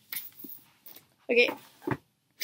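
A woman's voice saying "Okay" about a second in, with faint, brief handling noise at the start.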